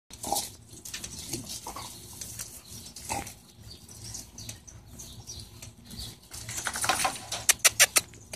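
Dogs giving a few short, grunting vocal sounds, followed near the end by a quickening run of sharp clicks.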